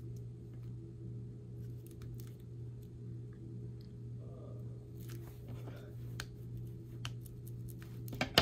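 Paper and cardstock being handled and pressed flat by hand: faint rustles and light ticks, a little busier about five seconds in, over a steady low hum.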